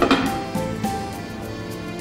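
Background score music with slow, sustained notes.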